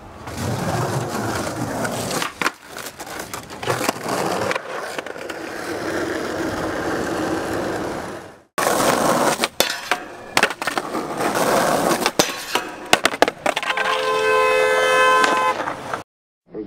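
Skateboard wheels rolling over concrete pavement, with many sharp clacks of the board striking the ground. The sound cuts off abruptly about halfway through, then resumes. Near the end a steady pitched tone with several overtones sounds for about a second and a half.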